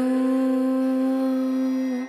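Background music: a singer holds one long, steady note, sung or hummed, between ornamented sung phrases.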